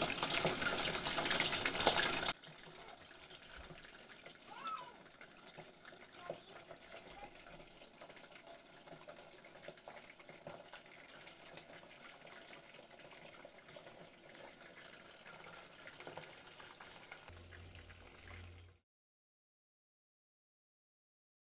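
Chicken wings deep-frying in hot cooking oil: a loud, steady sizzle that cuts off about two seconds in. After that there is only faint room sound with a few small knocks, and then silence near the end.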